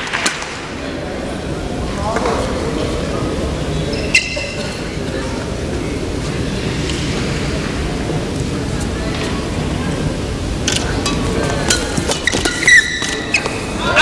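Steady crowd murmur in a badminton arena, with sharp racket strikes on the shuttlecock and short shoe squeaks on the court coming thick and fast near the end as a rally is played.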